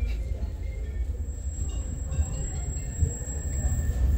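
Steady low rumble of a London Underground Jubilee line 1996 Stock train approaching through the tunnel, heard from the platform behind closed platform screen doors.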